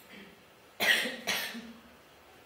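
A person coughing twice, the two coughs about half a second apart.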